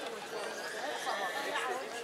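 Several people nearby chatting, their voices overlapping.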